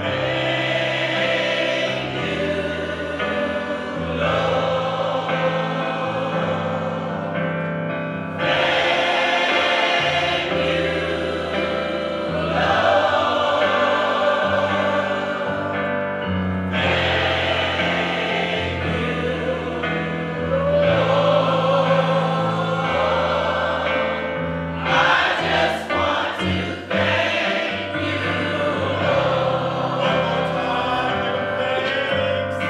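Church choir singing a gospel song, in phrases about eight seconds long.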